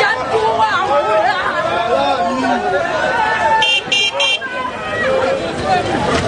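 A crowd of many people talking and calling out at once in the open street, with three short high-pitched toots a little under four seconds in.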